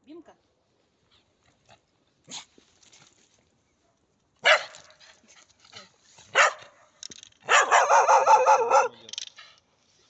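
Spaniel barking: two sharp, loud barks about two seconds apart, then a longer, louder run of barking lasting about a second and a half near the end.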